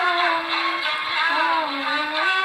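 A woman singing a slow, melodic song, holding one long note that sinks a little near the end before rising again.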